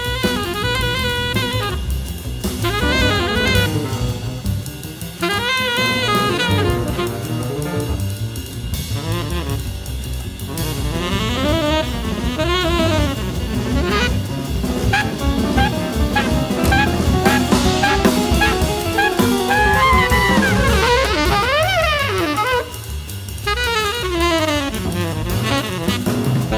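Jazz saxophone solo over a drum kit. It opens on a held note, then moves into fast runs with sliding, bending phrases.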